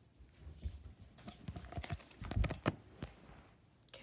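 Playing cards being handled: scattered light taps and rustles of card stock with a few low bumps, densest and loudest a little past halfway.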